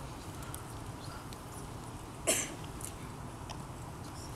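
Quiet hall room tone with one short cough about two seconds in and a few faint clicks.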